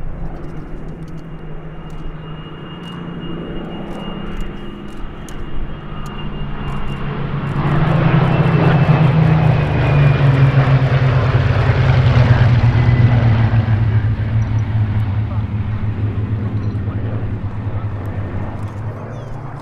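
A formation of Supermarine Spitfires and Hawker Hurricanes flying past, their Rolls-Royce Merlin V12 piston engines running together. The sound builds to its loudest a little before halfway, then drops in pitch as the planes go by and slowly fades.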